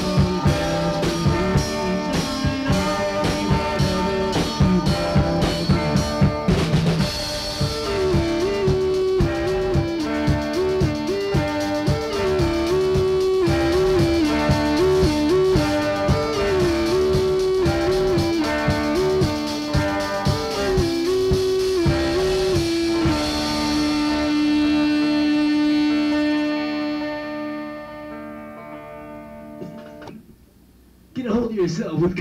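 A rock band's four-track tape recording from 1980: drums and guitar under a lead melody line. The song ends on a long held note that fades out near the end.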